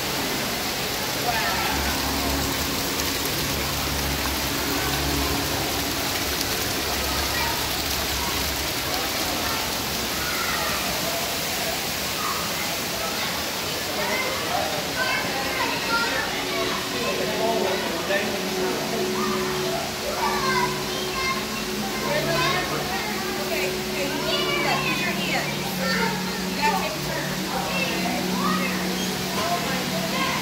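Background chatter of a crowd of children and adults playing, over the steady rush of running water from water-play tables and fountains, with a low steady hum underneath.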